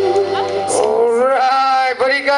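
A female singer's long held final note with vibrato, ending under a second in; then a man's voice starts speaking over the stage sound system, drawn out and wavering in pitch.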